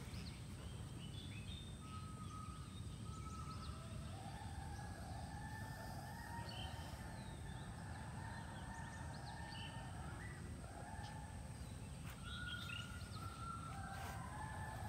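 Faint park ambience: scattered short bird chirps over a steady low rumble. From about four seconds in, a long drawn-out call at two pitches is held for several seconds, breaks off, and starts again near the end.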